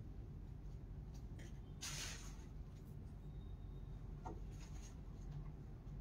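Quiet room tone with a steady low hum, broken by a few faint scratchy rustles and light clicks. The loudest is a short rustle about two seconds in.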